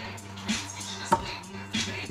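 A dried, cured cannabis bud handled and squeezed close to the microphone, giving three faint, crisp clicks, the sharpest about halfway. Faint background music with a steady low hum plays underneath.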